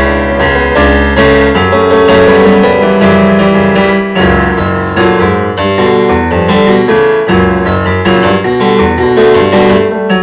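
Piano-voiced keyboard played in free improvisation: an unbroken run of chords and single notes over low bass notes, loud throughout.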